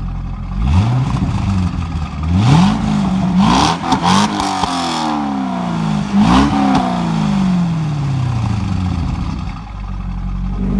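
1999 C5 Chevrolet Corvette's LS1 V8 revved through its exhaust while parked: several sharp throttle blips that rise and fall back, the last one winding down slowly to idle near the end.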